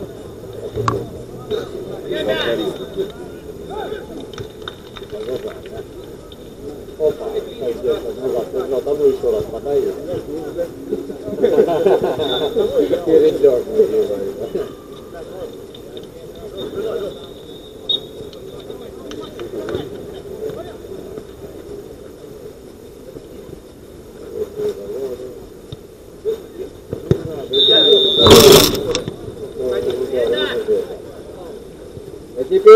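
Players' voices shouting and calling across an outdoor football pitch during play, with occasional sharp knocks, and a loud sharp knock just before the end.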